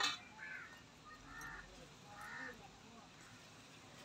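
A short metallic clink right at the start, then a crow cawing three times, faintly, about a second apart.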